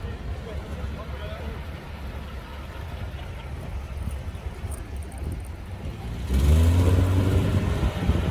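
1948 Davis Divan three-wheelers running at low speed as they roll up to line up, a steady low engine rumble. About six seconds in, a louder rush of noise sets in.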